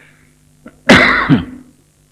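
A man clears his throat once, a short rough burst about a second in, just after a faint click, over a steady low hum.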